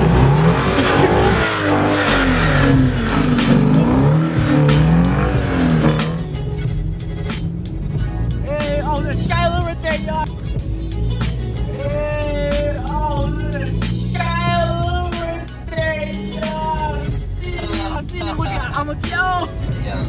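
A car engine revving up and down, rising and falling in pitch several times, over a loud rush of tyre and snow noise as the car drives in deep snow. About six seconds in this gives way to music with a singing voice.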